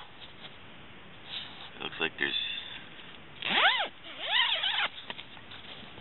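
Tent door zipper pulled open in two strokes near the end, each a rising-then-falling zip.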